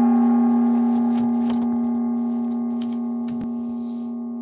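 A gong rings on after being struck just before, its steady, layered tones slowly dying away. It is struck to mark a new bid. A few faint knocks sound over the ringing.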